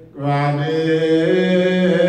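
A man chanting an Ethiopian Orthodox hymn into a microphone: after a brief pause for breath he comes back in with long, drawn-out held notes.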